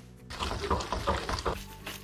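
Soft background music with steady held notes, over the wet, irregular shuffling of spaghetti being stirred and tossed in a frying pan as grated provolone cheese is worked in to make the creamy sauce. The pasta noise falls off after about a second and a half.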